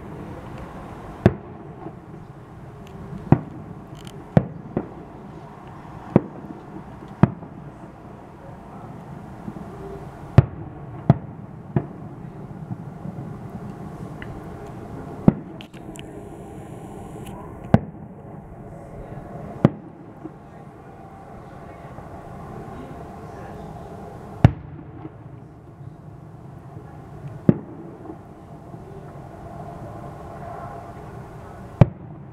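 Aerial firework shells bursting: about fourteen sharp bangs at irregular intervals, sometimes two in quick succession, over a steady low background noise.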